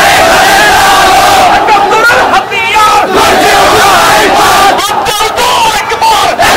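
A crowd of marchers shouting slogans in chorus, many voices at once and loud throughout, with a brief drop about two and a half seconds in.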